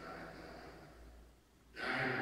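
A man speaking in a reverberant church pauses between phrases: the echo of his voice fades away, and he starts speaking again near the end.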